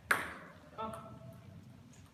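A single sharp table tennis ball bounce, ringing briefly in the large hall, followed by a short burst of voice.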